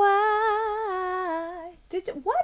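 A woman's wordless, drawn-out "ooh", held on one note with a slight waver and sliding slowly down in pitch before fading out after about a second and a half.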